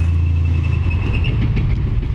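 A tracked tank driving toward the listener, its engine running with a low, steady rumble. A thin high whine over it fades out a little past a second in.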